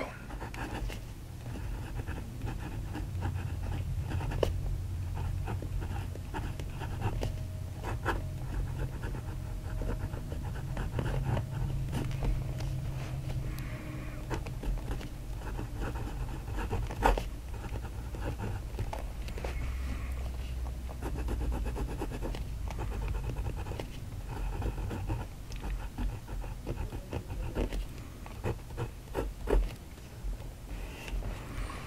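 Fine steel nib of a PenBBS 489 fountain pen writing on paper, making a light scratching that comes and goes with each stroke and an occasional sharp tick. This is the nib's feedback, over a steady low hum.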